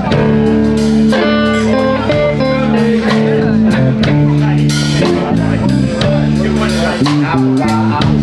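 Live blues band playing: electric guitar over bass guitar and a drum kit.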